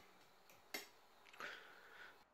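Near silence with a few faint clicks of a metal spoon against a glass.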